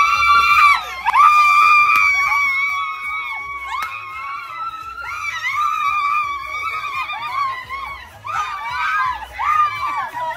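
A woman screaming with joy: long, very high-pitched held screams over the first few seconds, then shorter wavering ones.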